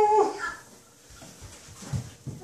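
A toddler's long, held high-pitched vocal squeal that cuts off just after the start, followed by quiet with a brief faint high sound and a soft low thump near the end.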